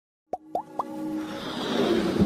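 Animated logo intro sting: three quick pops, each gliding up in pitch, in the first second, then a whoosh that swells steadily louder.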